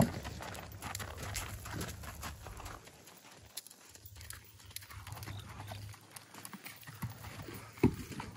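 A ridden molly mule's hooves: a loud knock as a hoof strikes the wooden platform right at the start, then uneven footfalls on gravel as she walks, and another hard knock on the wood near the end.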